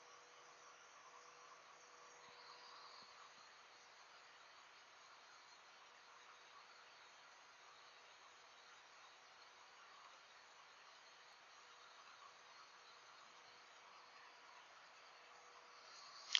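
Near silence: faint steady hiss with a thin, faint hum.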